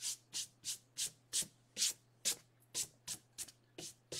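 About ten quick rubbing strokes, two to three a second, each a short swish with quiet gaps between.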